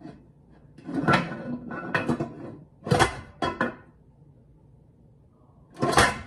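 Aluminium pressure canner's lid being twisted loose and lifted off the pot once the canner has depressurised: several short metal scrapes and knocks, the loudest about three seconds in.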